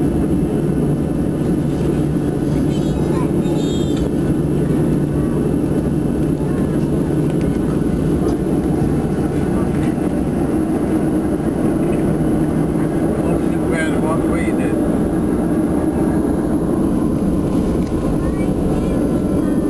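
Jet airliner cabin noise while taxiing: the engines run steadily at low power, a constant low rumble with a thin, high, steady whine on top.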